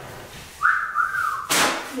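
Someone whistling two short notes at about the same pitch, the second dipping slightly, followed about one and a half seconds in by a sudden loud noisy burst.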